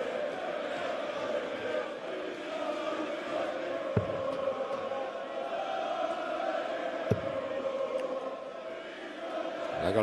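Large arena crowd chanting and singing steadily. Two sharp thuds of darts striking a Unicorn dartboard come about four and seven seconds in.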